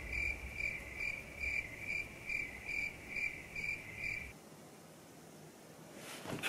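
Cricket-chirping sound effect: an even, high-pitched chirp repeating about twice a second. It stops abruptly about four seconds in.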